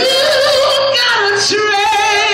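A woman singing a gospel solo: her voice slides up into a long held note, then steps down to lower held notes.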